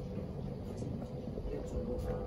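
Steady low background rumble with a faint steady hum.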